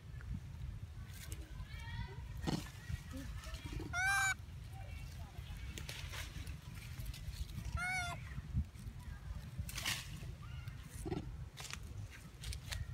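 Baby long-tailed macaque giving short, high squealing cries: a loud pair about four seconds in and a quick series about eight seconds in. Under them are scattered rustles and clicks in the grass over a low rumble.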